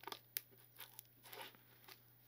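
Faint clicks and rustling of two diamond-painted Christmas tree pieces being pushed and slid together by hand, with one sharper click under half a second in. The fit is stiff, which is put down to the clear protective plastic film still on the pieces.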